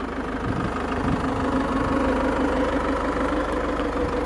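Land Rover Freelander TD4's 2.2-litre four-cylinder diesel engine idling steadily.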